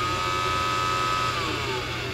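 Roomba 530 robot vacuum's suction motor whining at a steady high pitch. About two-thirds of the way through, the pitch starts to fall as the motor winds down.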